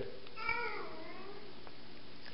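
A faint, brief high-pitched cry that falls in pitch and lasts under a second, heard over quiet room tone.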